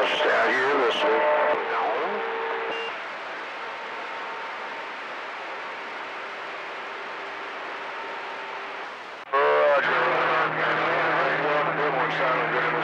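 CB radio receiver on channel 28 (27.285 MHz) between long-distance transmissions: a voice trails off with faint steady whistles, then comes about six seconds of steady band hiss. About nine seconds in, another station keys up suddenly and loudly, and its voice comes in over a steady low hum.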